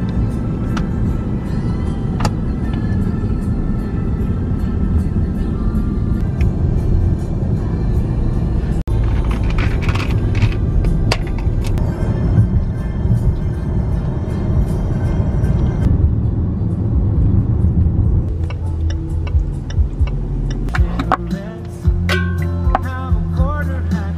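Steady low road and engine rumble inside a moving car's cabin, with background music playing over it.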